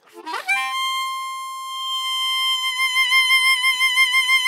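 Seydel harmonica: a quick rise into one long, high held note with a bright tone full of overtones, shaped by a forward 'E'-vowel mouth placement. Vibrato comes in about halfway through. The brightness and vibrato make it sound electric, as if amplified.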